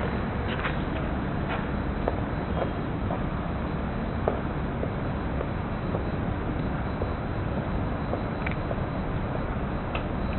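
Steady low rumble of outdoor city background noise, with a few faint light ticks from footsteps on a canvas laid on the ground.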